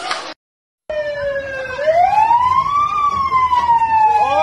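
A police siren wailing, starting about a second in after a brief gap of silence: its pitch dips, rises slowly, then falls off slowly again.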